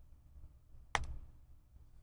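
A single sharp mouse click about a second in, over a faint low hum.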